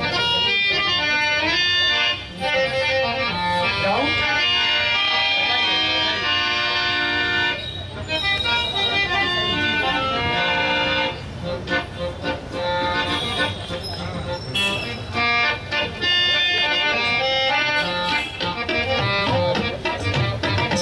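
Harmonium played with sustained reed notes and chords, with a woman's voice singing along over it.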